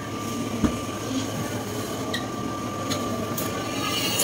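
Steady store background hum with a faint high steady tone running through it, and a single soft thump just under a second in.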